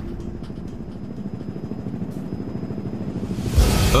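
A low, steady rumble that swells into a loud whoosh about three and a half seconds in.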